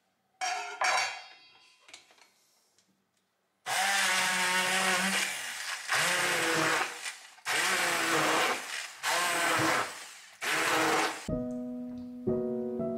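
Two sharp metallic clanks from the saucepan, then an electric hand blender puréeing cooked vegetables in the pan, run in five bursts of one to two seconds, its pitch wavering as it works through the pieces. Piano music comes in near the end.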